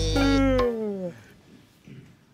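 A cartoon character's exaggerated, drawn-out yawn: one long voiced sound falling steadily in pitch over about a second. Background music underneath cuts off partway through.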